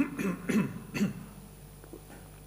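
A man swallowing water from a glass and clearing his throat close to a desk microphone: about four short throaty sounds in the first second, then a faint click as the glass is set down.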